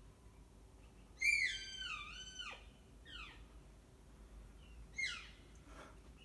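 Elk calling: one long high-pitched squeal, starting about a second in, that wavers and drops in pitch before trailing off. Two short falling chirps follow, about three and five seconds in.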